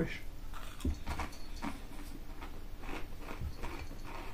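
A person biting into and chewing crinkle-cut potato crisps: a run of short, irregular crunches.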